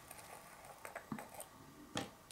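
A few faint clicks and taps from small plastic items (a nail tip and an acrylic powder jar) being handled on a table, the sharpest click near the end.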